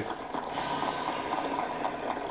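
Crowd applauding, heard through a radio's speaker.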